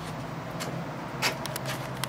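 Steady hiss of rain with a low hum underneath, and a few light clicks and knocks from the camera being handled about a second in.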